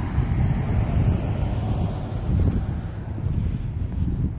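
Wind buffeting a phone's microphone, a gusting low rumble with no tone in it.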